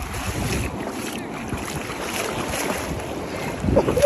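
Wind rumbling on a phone microphone over shallow seawater washing and sloshing as someone wades out through the surf.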